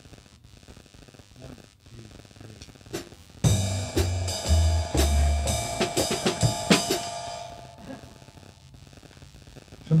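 A short, abrupt burst of band music: drums, low bass notes and sustained keyboard tones start suddenly about three seconds in and break off about four seconds later. It is a false start: the GO:PIANO digital piano had switched to some other function instead of its piano sound.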